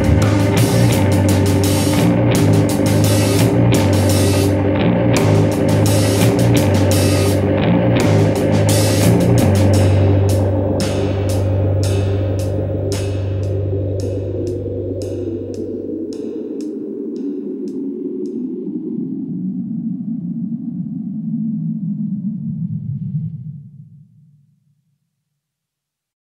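Instrumental progressive/math rock played by two guitars and a drum kit (Yamaha drums, Sabian cymbals). Past the middle the drum hits thin out and stop, and the guitars' last chord is left ringing and fading away, ending the track.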